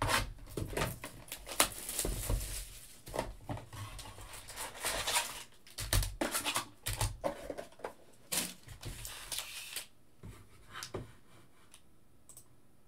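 A sealed trading-card hobby box being unwrapped and its cardboard lid opened, then foil card packs pulled out and stacked on a table: a run of tearing, rustling and sharp taps that thins out about ten seconds in.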